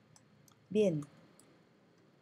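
Computer keyboard being typed on: a few faint, scattered key clicks. About three-quarters of a second in, a short vocal sound falling in pitch, louder than the clicks.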